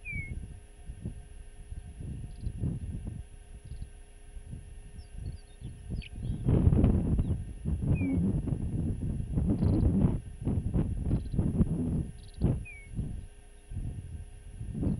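Wind buffeting the microphone in irregular gusts, low and rumbling, growing much stronger about halfway through.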